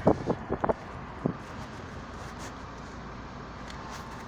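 Steady noise of a car driving slowly: low engine and road rumble heard from inside the cabin, with wind.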